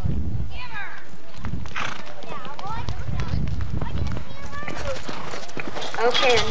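A horse galloping on soft arena dirt, its hoofbeats coming as repeated dull thuds, with voices calling out over them.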